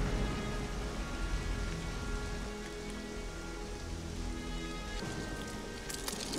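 Film soundtrack: background music of long held notes over the steady hiss of rain.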